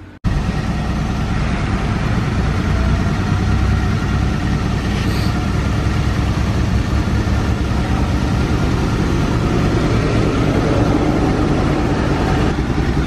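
1987 GMC Sierra pickup's engine idling steadily; the sound starts abruptly a moment in.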